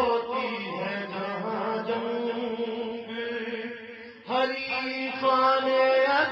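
A man chanting verses solo in long held notes, with a short break about four seconds in before he comes back in louder.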